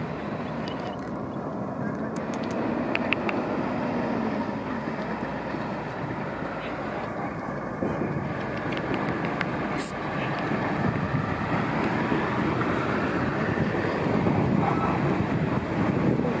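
Indistinct voices over steady outdoor background noise, with a few faint clicks.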